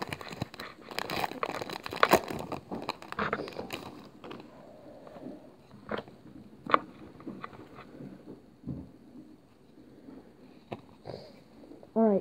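Foil Pokémon card booster-pack wrapper crinkling and tearing open, with dense crackling for the first few seconds. Sparser clicks and rustles follow as the cards are pulled out and handled.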